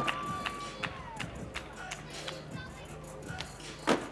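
Skateboard rolling on a flat platform with scattered light clacks and taps, then one loud sharp board pop or slap near the end, over faint background music and crowd.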